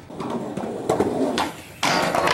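Skateboard attempting a frontside lipslide down a steel handrail: a few sharp clacks of the board, then a sudden loud crash near the end as the board comes off the rail.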